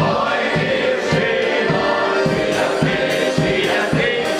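Ukrainian folk song played by a live wedding band, with accordion and a wind instrument over a steady beat, and several voices singing along.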